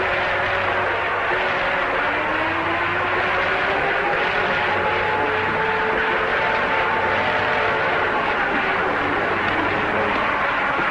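A steady engine roar with a low hum and faint tones drifting slowly up and down in pitch.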